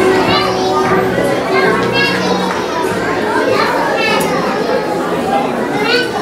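Many children's voices chattering and calling out at once, echoing in a large hall.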